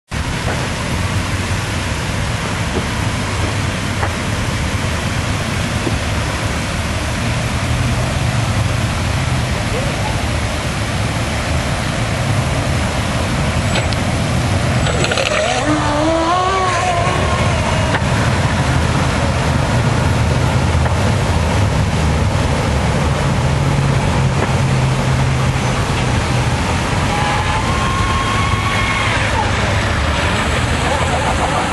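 Quarter-scale radio-controlled shovelnose hydroplane running at speed across the water, its motor giving a steady, loud drone with a short wavering rise and fall in pitch about halfway through.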